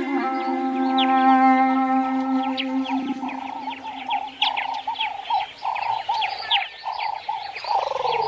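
A held low note of background music fades out over the first few seconds. It gives way to birds chirping, with many short high chirps and a quick repeated call several times a second.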